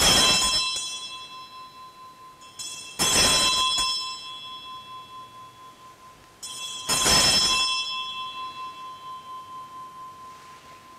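Altar bells rung three times during the elevation of the chalice at the consecration: near the start, about three seconds in and about seven seconds in. Each ring starts with a light stroke followed by a loud one, then rings out and fades.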